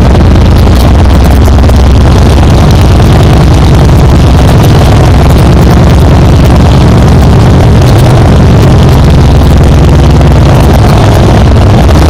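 Harley-Davidson Dyna Wide Glide's V-twin engine idling steadily, so loud that the recording is pinned at full level.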